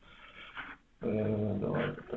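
A dog vocalising: a steady, drawn-out pitched sound about a second long in the second half, after a fainter one about half a second in.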